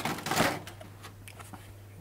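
Cardboard Funko Pop box being picked up and turned over in the hands: a short rustle and scrape of cardboard in the first half second, then faint light taps as it is handled.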